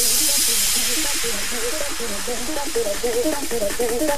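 Breakdown in a hard house dance track: no kick drum or bass, just a loud white-noise wash that slowly fades, over a short wavering synth figure repeating underneath.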